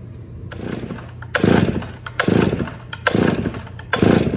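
Stihl 038 AV Super chainsaw's two-stroke engine running on a newly fitted carburetor, revving up in short surges about once a second with a lower tone between. It is running rich on the low-speed side.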